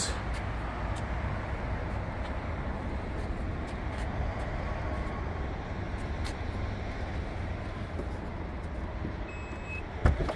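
Steady low outdoor background rumble with a few faint scattered ticks.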